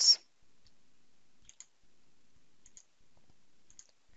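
Faint computer mouse clicks: three pairs of quick clicks, about a second apart.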